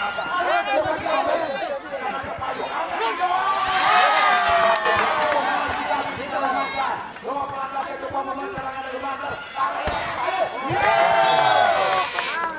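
Spectators at an outdoor volleyball match shouting and chattering, with a sharp smack of a ball being hit about ten seconds in. The crowd's shouting swells twice, loudest about four seconds in and again near the end as a point is won.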